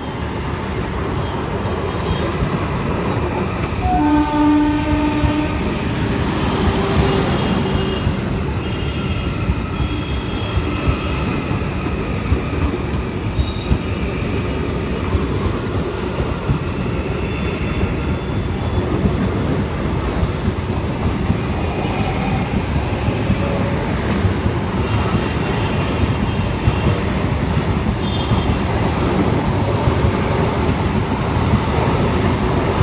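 Vande Bharat Express electric multiple-unit train passing close by: a steady rumble of wheels on rail with rapid clicks over the rail joints. A short horn blast sounds about four seconds in.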